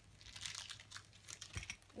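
Thin plastic toy wrapper crinkling and rustling in irregular crackles as it is pulled open by hand, with a low bump about one and a half seconds in.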